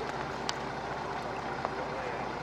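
Steady rush of wind and choppy water on open water, with a low steady hum underneath like a boat's engine. A single sharp click about half a second in.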